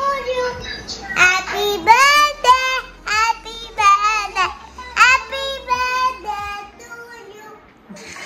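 A child singing in short phrases of high, gliding notes, fading out near the end.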